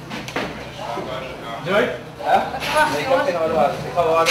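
Indistinct talking in low voices, with a sharp click just after the start.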